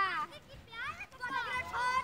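Children's voices calling and shouting to each other at a distance, high-pitched and faint, in a boys' outdoor cricket game.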